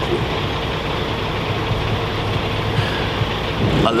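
An engine idling steadily: a constant low drone with a hum that does not change.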